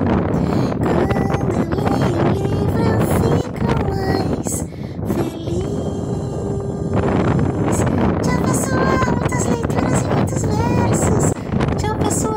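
A woman singing a playful children's tune, with gliding and held notes.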